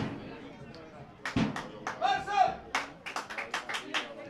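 Football supporters clapping in a quick rhythm, with two dull thumps, one at the start and one about a second and a half in. A single high-pitched shout from the crowd comes about two seconds in.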